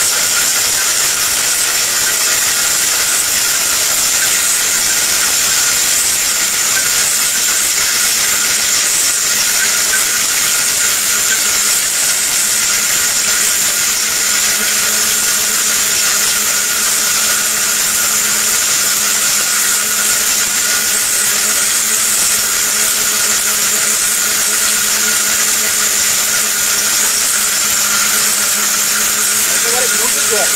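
Ricco electric mixer grinder's motor running steadily with a high whine, blending chunks into liquid in its steel jar.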